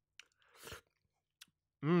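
Close-miked chewing and mouth sounds: a few short wet clicks and a brief smacking burst. A short hummed "mmm" of approval begins near the end.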